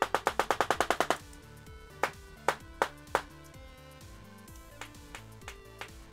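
Handheld battery-powered Tesla coil gun firing sparks in rapid automatic mode, a fast even train of cracks about ten a second that stops about a second in. A few single cracks follow, about half a second apart.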